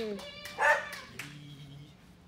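A small dog gives one short, high yip about half a second in, followed by a faint low whine that fades out.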